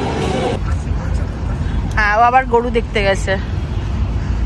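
Indoor chatter and music cut off about half a second in, giving way to a steady low rumble. A short, high-pitched voice sounds about halfway through.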